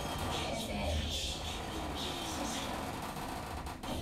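Schindler 3300 elevator car travelling upward, a steady low hum of the ride heard inside the cab.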